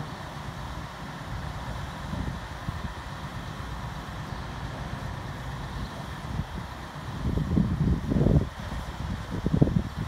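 Lorry-mounted crane's truck engine running steadily as it drives the crane during a lift, with wind gusting on the microphone in the last few seconds.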